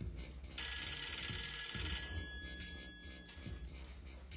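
Telephone ringing: a bell-like ring with steady high tones starts suddenly about half a second in, holds for about a second and a half, then dies away.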